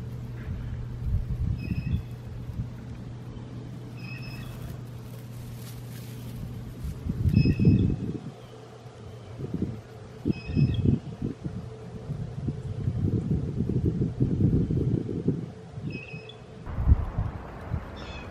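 A bird repeats a short high chirp about five times, a few seconds apart, over low rustling and rumbling noise that comes and goes in bouts.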